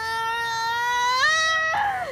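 A woman in labour crying out in pain in one long held wail, stepping up in pitch about a second in and falling away at the end, as hard pressure is put on her abdomen to free a baby with stuck shoulders.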